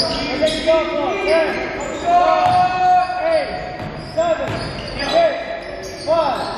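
Pickup basketball game on a gym floor: the ball dribbling with sharp bounces and sneakers squeaking in short chirps again and again.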